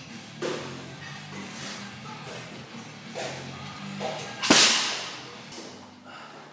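A barbell loaded with bumper plates dropped onto rubber gym flooring: one loud thud about four and a half seconds in, ringing on briefly, with a lighter knock near the start. Background music plays throughout.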